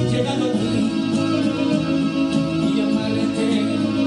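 A man singing into a handheld microphone over accompanying music, continuous and steady in level.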